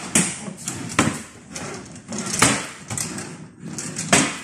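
Wooden drawers of a chest of drawers being pulled open and pushed shut by hand: a run of sharp wooden knocks about a second apart, with sliding scrapes between them.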